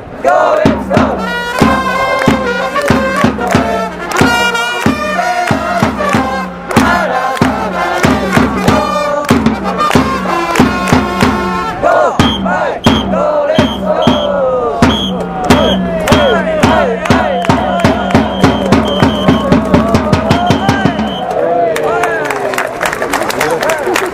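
Baseball cheering section (ōendan) playing a batter's cheer song: trumpets over steady, even drumbeats, with fans chanting along in unison. The song stops about a second before the end, and crowd noise follows.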